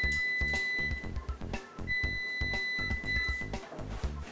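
Background music with a steady beat, over two long, steady, high-pitched electronic beeps from a front-loading washing machine's control panel as its buttons are pressed; the first ends about a second in, the second runs for about a second and a half near the middle.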